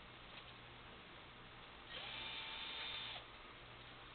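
Cordless drill fitted with a 13 mm socket running at a steady speed for just over a second, starting about two seconds in, over faint room tone.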